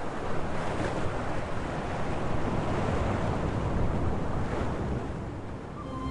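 Ocean surf: waves breaking and washing up a sandy beach in a steady rush that swells and eases, dipping slightly near the end.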